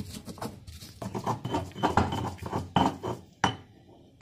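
A stone pestle grinding garlic in a volcanic-stone molcajete: a run of irregular scraping and knocking strokes of stone on stone that stops about three and a half seconds in.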